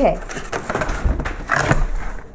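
A flat cardboard mailing box being handled, with uneven rustling and a few short sharp scrapes and knocks.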